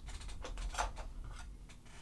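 Rummaging among small objects on a desk: a scatter of light clicks and knocks as things are moved and one is picked up, over a faint low rumble.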